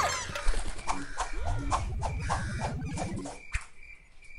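A cartoon character's scream at the start, then a quick run of sharp hits and short swishing sound effects under a low tone that rises in pitch. Most of it stops about three and a half seconds in.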